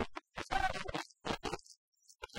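Film song from a stage dance number: band music with singing, the soundtrack breaking up into short choppy bursts with brief dropouts between them.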